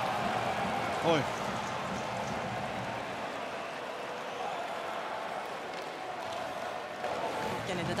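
Ice hockey arena crowd noise: a steady din from the stands that eases slightly, with a short exclamation from a voice about a second in.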